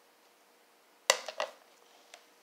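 A plastic cup of melted chocolate knocking as a dipped pretzel rod is shaken out over it to drop the excess chocolate: one sharp knock about a second in, then two lighter ones right after.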